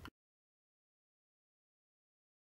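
Silence: the sound track cuts out completely a moment in, after a brief trace of room noise.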